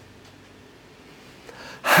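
Quiet room tone, then a man's short intake of breath about one and a half seconds in, just before he speaks again.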